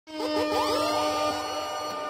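Electronic DJ music cutting in abruptly: a held synth tone with a string of rising swoop effects over it.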